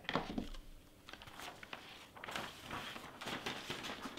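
Handling noises: a knock as the heat press is set aside, then irregular rustling and crinkling as a Teflon sheet and a plastic iron-on vinyl carrier sheet are peeled off the fabric.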